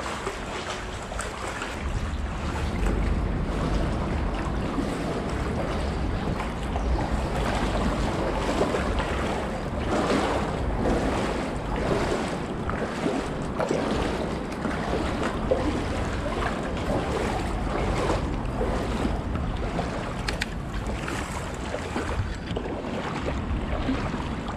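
Shallow river water splashing and lapping close to the microphone as it moves downstream, with wind rumbling on the microphone from about two seconds in.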